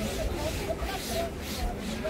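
Indistinct chatter of many distant voices over a steady low rumble.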